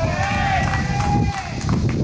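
A long, drawn-out shouted call on a baseball field, one voice held for about a second and a half and wavering slightly in pitch, over a steady low rumble.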